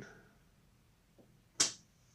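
A single sharp click of a small toggle switch being flipped on a motorcycle lighting test board, about one and a half seconds in.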